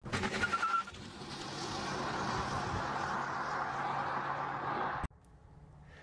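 A steady rush of vehicle-like noise that builds over about a second and holds, then cuts off suddenly about five seconds in, with a low steady hum beneath it. A few faint clicks come before it.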